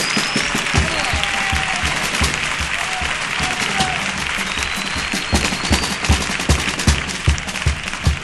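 Audience applauding and cheering while a murga's bass drum keeps a steady beat of about three strokes a second; the drumming comes through louder from about five seconds in.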